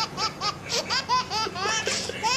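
High-pitched laughter, a rapid run of short rising-and-falling 'ha' sounds, about five or six a second.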